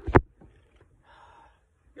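A woman's sharp breath very close to a phone's microphone: one short, loud puff just after the start, followed by a faint, softer breath about a second in.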